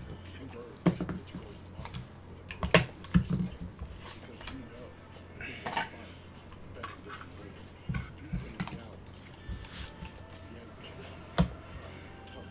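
Trading cards and hard clear-plastic card holders being handled on a table: scattered sharp clicks and light knocks of plastic, with soft rustling between them.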